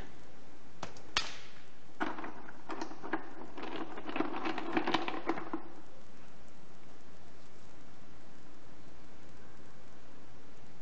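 Hard stone mineral specimens clicking and knocking against one another as they are picked up and set down. Two single clicks come about a second in, then a quick run of clicks and rattles lasting a few seconds.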